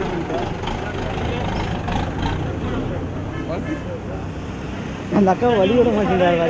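Diesel bus engine idling, a steady low rumble, with voices over it; loud close talking starts near the end.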